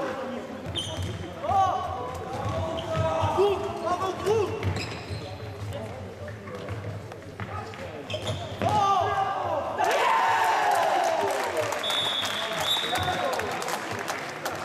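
Indoor futsal play echoing in a sports hall: the ball knocking and bouncing on the wooden floor, shoes squeaking and players shouting. The noise swells about ten seconds in, and a short high whistle sounds near the end.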